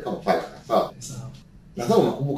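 A man's voice in a few short bursts: two in the first second and one near the end.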